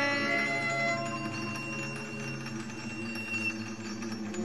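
Contemporary classical chamber ensemble with bowed strings, thinning out from busy playing to quiet sustained notes: a thin, high held tone over low held notes, softening toward the end.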